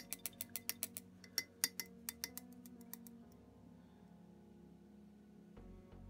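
Paintbrush rinsed in a water pot, tapping against the pot's side in a fast run of light clicks, about six a second, which stop about three seconds in.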